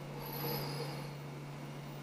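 Faint scratch of a drafting compass's pencil lead drawing an arc on paper, lasting under a second, over a steady low hum.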